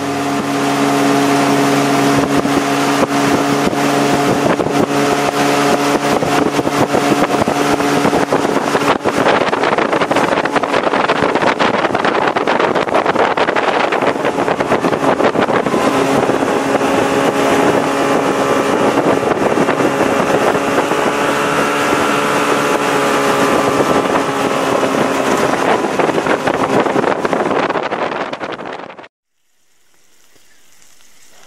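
Jet boat engine running under way at a steady speed over rushing water and wind, its note shifting in pitch a couple of times; it cuts off suddenly near the end.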